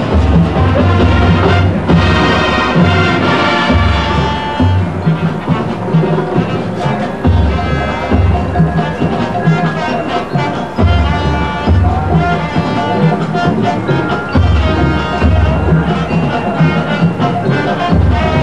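Full marching band playing a brass-and-percussion piece, with heavy low bass notes coming in repeated phrases under the horns. It is heard from the stands on old videotape audio.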